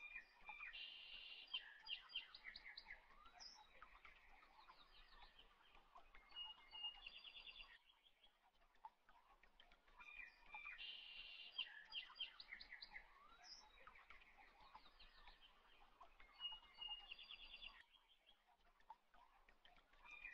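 Faint birdsong, chirps and short trills, in a recording that repeats the same stretch about every ten seconds, like a looped background track.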